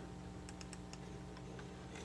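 Several faint, scattered clicks at a computer as an image file is opened, over a steady low electrical hum.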